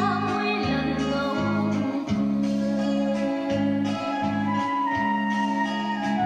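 Recorded music, a singer over plucked strings and a held bass line, played back by a vintage Sony stereo reel-to-reel tape recorder.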